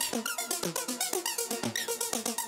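Electronic synth loop played through the Arturia Vocoder V vocoder plugin: a fast pulsing run of short notes, about seven a second, many with falling pitch sweeps.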